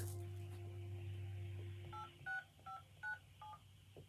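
Touch-tone telephone keypad entering a PIN: five short two-note DTMF beeps in quick succession starting about halfway in, after a steady hum drops out.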